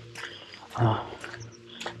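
A man's short wordless vocal sound, like a drawn-out hum or grunt, a little under a second in, between phrases of speech.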